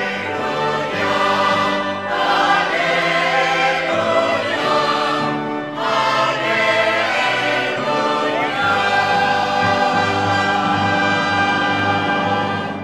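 A choir singing with instrumental accompaniment. There is a short break between phrases about halfway through, then one long held chord over the last few seconds.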